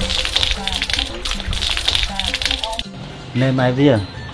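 Water poured from a plastic dipper splashing onto a person's hands, a crackly splatter lasting a little under three seconds, with music underneath. A man's voice follows near the end.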